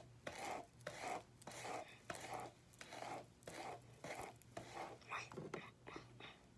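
Hair being brushed: faint, rhythmic brush strokes through the hair, about two a second.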